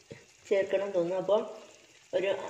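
Squid in a thick tomato masala sizzling gently in a frying pan, with a click near the start. A short spoken phrase comes in about half a second in.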